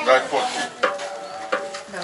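A metal spoon stirring in a large cast-iron cauldron of cooking grain, with a few short scrapes and knocks against the pot.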